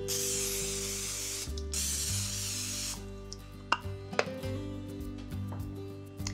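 Aerosol cooking spray can hissing in two bursts, the first about a second and a half long and the second a little over a second, as it coats a metal baking sheet.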